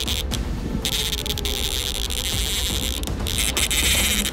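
Baitcasting reel's drag buzzing as a hooked salmon pulls line. The buzz stops briefly about half a second in and again a little after three seconds. A steady low rumble runs underneath.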